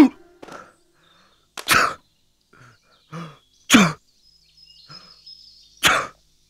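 Four loud human sneezes, one after another about two seconds apart, with short quieter sounds between them.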